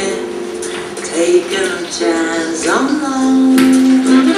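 Jazz from a radio station, playing through a portable radio's speaker: a melody of held notes.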